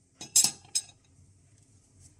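A plastic coffee tamper set down on a ceramic plate, clinking against a metal spoon: three short clinks within the first second, the second the loudest.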